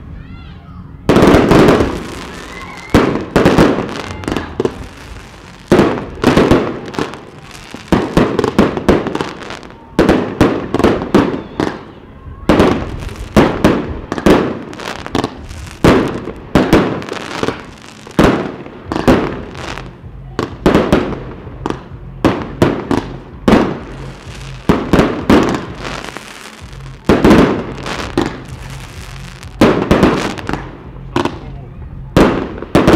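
Cafferata B-52 firework cake firing: a rapid, irregular series of launch shots and aerial bursts, starting with a loud volley about a second in.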